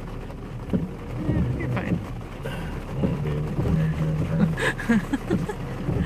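Quiet, untranscribed talk inside a truck cabin over the truck's low, steady engine hum.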